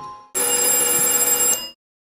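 A bell ringing steadily for over a second, then cutting off abruptly.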